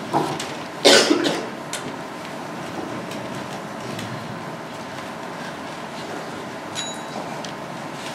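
Quiet room tone of a hall full of waiting people, with faint rustling and small clicks, and a cough about a second in.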